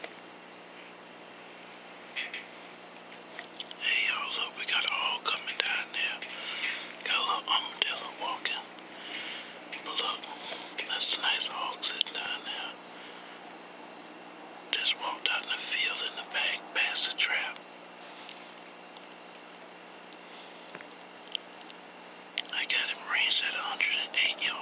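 A steady, high-pitched chorus of night insects runs throughout. Over it, soft whispering comes in short runs several times.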